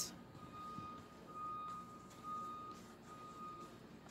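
A faint, steady high-pitched tone, broken briefly a few times, over quiet background noise.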